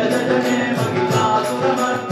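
Devotional Hindu chant (a stotram) sung over instrumental music, with a steady percussion beat of about three strokes a second.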